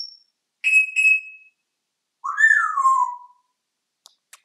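African grey parrot whistling: two short, clear high notes about a second in, then a longer note that slides down in pitch.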